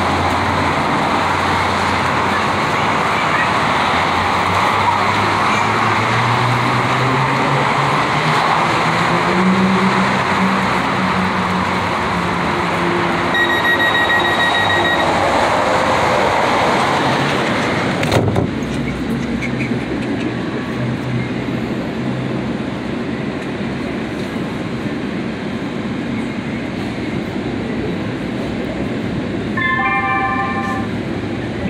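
LA Metro C Line light-rail train running, heard from inside the car: a steady rumble of wheels on rail with a low motor whine that rises in pitch about a third of the way through. A short beep sounds near the middle, the noise drops abruptly a little past the middle, and a short multi-note chime sounds at the very end.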